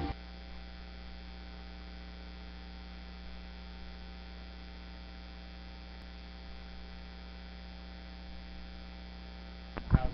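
Steady electrical mains hum: a low, unchanging buzz with a ladder of evenly spaced overtones.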